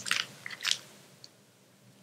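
Plastic frosting piping bag crinkling as it is twisted and squeezed in the hands: two short crinkles within the first second.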